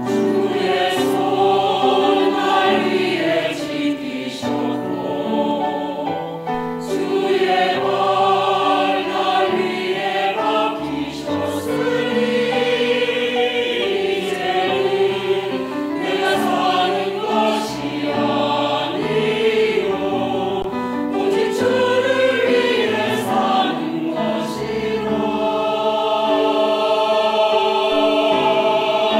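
Mixed choir of women and men singing a Korean hymn in harmony, with long held phrases.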